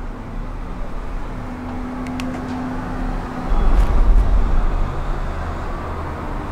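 Steady low rumble of a Disney Skyliner gondola cabin moving along its cable, heard from inside the cabin. It swells louder about three and a half seconds in for a second or so, with a few faint clicks earlier on.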